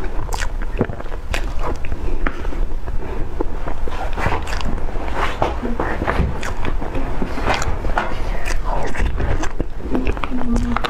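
Close-miked mouth sounds of eating soft cream cake: wet smacking and squishing with many small clicks throughout, and a spoon scooping through the whipped cream.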